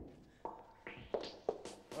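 Footsteps and shuffling on a hard floor: four sharp knocks at uneven spacing.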